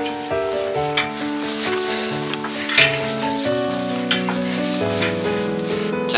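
Background music over the crunch and scrape of a hiker's boots on loose, rocky scree, with three sharper knocks of a step on rock, the loudest about three seconds in.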